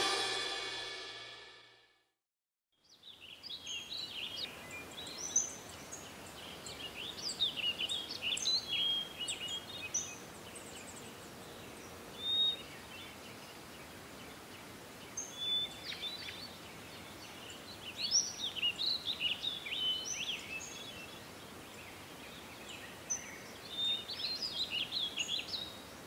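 The end of a pop song fades out, and after a brief silence comes a soft steady hiss with small birds chirping. Their quick, high calls come in several clusters, some seconds apart.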